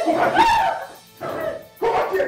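A woman's high-pitched cries and yelps of pain while she is being beaten, three short outcries with bending pitch, the first the loudest, over background music.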